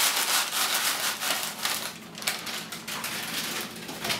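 Small crisp squares of baked unleavened bread sliding off parchment paper into a plastic container: a fast dry clatter of many pieces with paper rustling, densest for the first two seconds and then thinning out.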